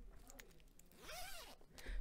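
Faint room quiet with a short, soft 'hmm' from a man's voice about a second in, rising and then falling in pitch, with a light breathy rustle over it.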